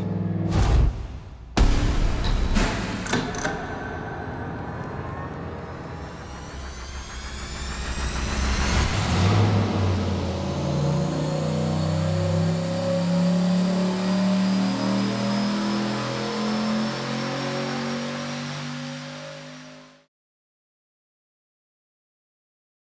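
Turbocharged 5.3-liter LS truck V8 on an engine dyno, built with cam, heads and intake and boosted by a BorgWarner S480 turbo. After loud bursts in the first two seconds it runs a wide-open-throttle dyno pull: the engine note climbs steadily in pitch with a rising turbo whistle above it, and the sound cuts off suddenly near the end.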